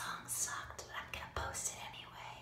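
A woman whispering a few short, breathy words close to the microphone, with sharp hissing 's' sounds.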